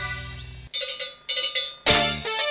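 A live cumbia band's chord dies away into a short break, where a few ringing metal cowbell strokes are played alone. The full band crashes back in near the end.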